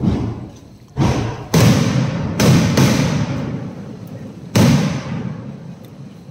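Aerial firework shells bursting overhead: about six loud booms in quick succession over several seconds, the last a little more than four seconds in, each trailing off in a rumbling echo.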